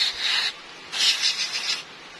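Aerosol cleaner sprayed onto a new scooter oil pump in two hissing bursts, a short one and then a longer one about a second in, to clean it before fitting.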